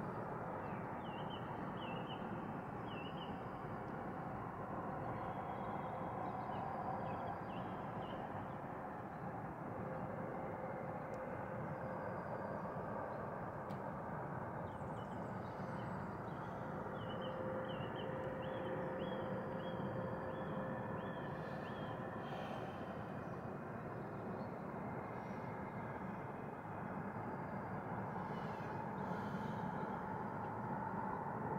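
A bird singing in short runs of quickly repeated high notes, about a second in and again a little past the middle, over a steady low background rumble with a faint hum.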